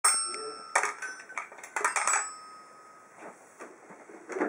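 Child's toy xylophone with metal bars being struck: a quick, uneven run of about eight ringing notes in the first two seconds or so, then the ringing fades away.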